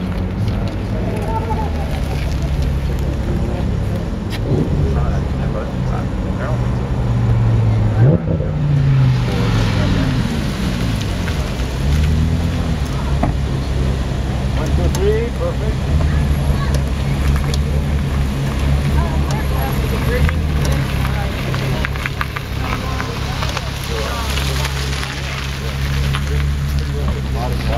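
Car engines running at low revs, a steady low hum, with one engine's pitch rising and falling about eight to twelve seconds in as a car revs or moves off.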